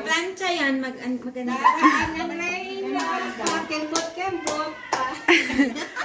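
Women talking, with several sharp hand claps about halfway through.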